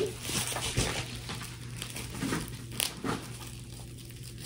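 Bubble-wrap packaging crinkling and rustling as it is handled, with irregular small crackles.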